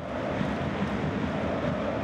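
A steady rushing rumble with no clear pitch, even in loudness throughout.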